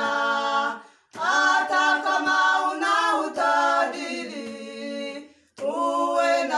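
A small group of women singing a gospel song a cappella, without instruments. The singing breaks off about a second in, then one long phrase follows and stops shortly before the end, when the next phrase begins.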